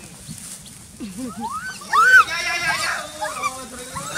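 Goats bleating and a woman's high-pitched squeals as the goats jump up at her for food. The loudest call comes about two seconds in and lasts about a second, wavering in pitch.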